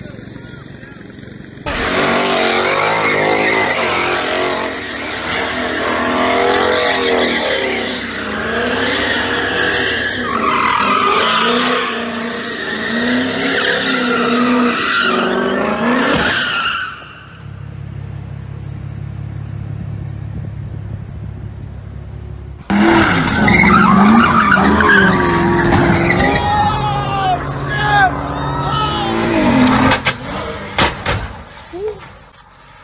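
Car engines revving and tyres squealing and skidding, mixed with voices. About halfway through, an engine runs steadily at a low pitch for several seconds, then the squealing and revving return.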